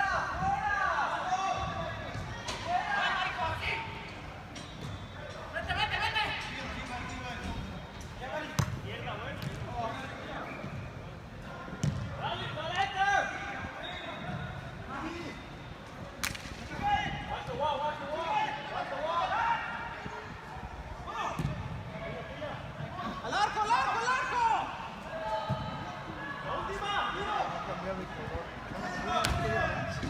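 Players and onlookers shouting during an indoor soccer game in a large hall, with a few sharp thuds of the ball being kicked.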